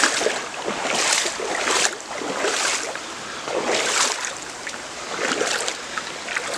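Legs wading through a shallow, stony river, the water swishing and splashing with each stride, roughly once a second.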